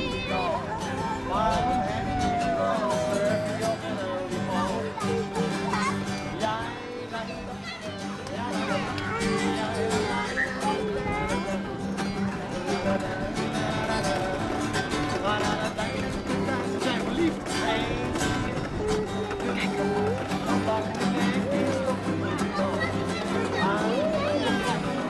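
Acoustic guitar played live, with people's voices over it throughout.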